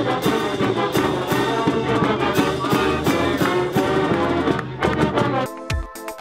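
Marching band playing in the stands: sousaphone, trombones and trumpets over a steady drum beat with cymbals. About five and a half seconds in it cuts abruptly to electronic background music.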